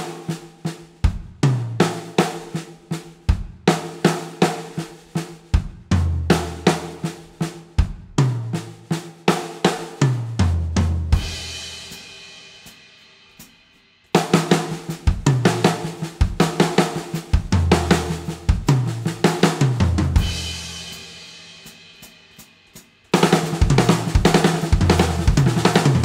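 Sakae drum kit with brass snare, toms and bass drum playing a sixteenth-note fill three times, at 40, 80 and then 160 beats per minute. Each pass ends on a cymbal crash that rings out and fades before the next, faster pass begins.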